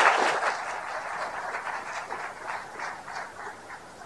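Audience applauding, loudest at the start and gradually thinning out.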